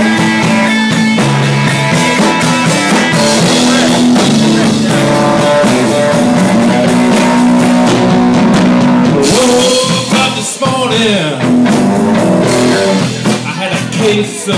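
Live blues band playing: electric guitar over a drum kit, loud and continuous, with the guitar's notes sliding in pitch about ten seconds in.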